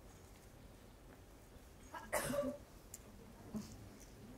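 A hushed auditorium with faint room tone, broken about two seconds in by a single short cough from the audience.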